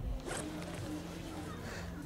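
Quiet film soundtrack: faint steady low tones under a soft haze, with a brief rustle about a third of a second in.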